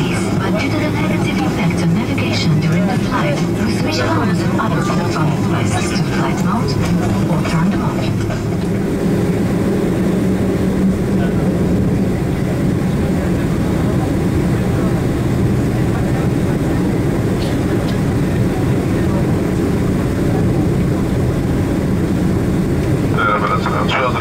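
Cabin noise of a Boeing 767-300 taxiing, heard from inside the cabin: the engines at idle give a steady low drone, with the even rush and rumble of the aircraft rolling over wet pavement.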